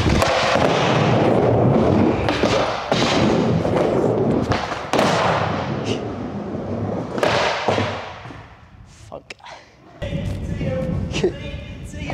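Skateboard rolling across a skatepark floor: the wheels run loud and steady, with several thuds and knocks from the board, dying away about eight seconds in.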